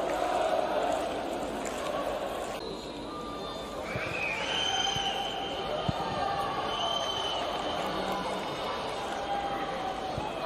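Football stadium crowd noise: a murmur of voices, shouting and some chanting from the stands, with a few thin, high, held tones in the middle.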